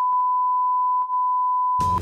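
A steady, loud 1 kHz sine-tone bleep edited into the soundtrack, with all other sound muted, as a censor bleep over speech. It cuts off near the end.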